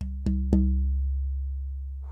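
Tap test of a granadillo (Platymiscium dimorphandrum) guitar back plate held up by one end. It is tapped three times in quick succession within about half a second, and each tap leaves a low, sustained ringing tone that fades slowly.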